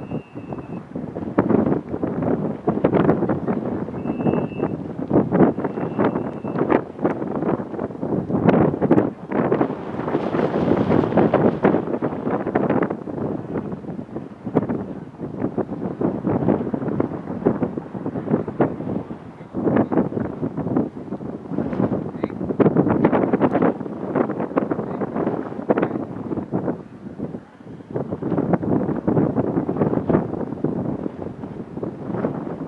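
Wind buffeting the camera's microphone: a loud, irregular rumble that rises and falls in gusts, with brief lulls.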